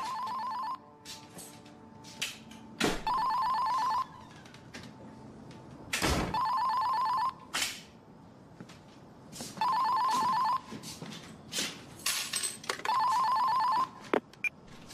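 Telephone ringing with an electronic warbling ring: five rings, each about a second long and about three seconds apart. A few short knocks and rustles fall between the rings.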